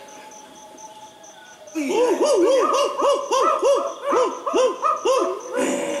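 A rapid run of about a dozen dog-like barks or yelps, each rising and falling in pitch, about three a second. It starts about two seconds in and stops shortly before the end.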